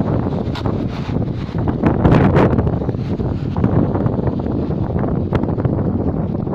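Wind buffeting the phone's microphone: a steady low rumble that swells loudest about two seconds in.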